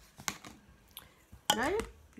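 A few light taps and clicks of a cut paper plate ring being handled and laid down on a table, then a woman says "Now".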